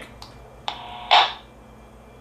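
Handheld two-way radio receiving a reply: faint hiss, a sharp click, then a short "uh" from the other station through the radio's speaker, followed by a brief rush of noise.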